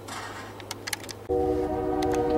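Diesel locomotive air horn sounding a steady chord of several tones, starting abruptly a little over a second in. Before it come faint scattered clicks.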